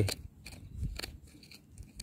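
Thin metal pick scraping and clicking in gravelly soil and small stones while digging around a rock, in a few light, short scrapes.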